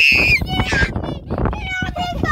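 A young boy's high-pitched shriek lasting about half a second, then whiny, cry-like vocalising: a panicked reaction to a praying mantis clinging to his jeans. Wind rumbles on the microphone underneath.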